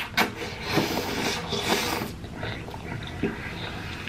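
Close-up wet chewing and mouth clicks of a man eating naan dipped in masala paneer curry. The chewing is densest in the first two seconds, then thins out.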